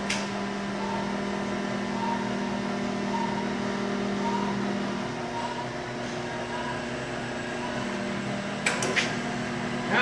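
Web-handling test stand running slowly under its rewind motor drive, a steady electric hum with a faint note that comes back about every three-quarters of a second as the rolls turn. A click at the start and a couple more near the end.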